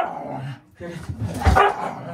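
A dog barking as two dogs jostle each other over treats, the loudest bark about a second and a half in.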